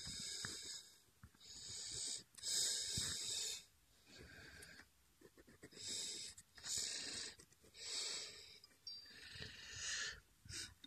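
Pen scratching across sketchbook paper in a series of short strokes, roughly one a second, as lines are drawn.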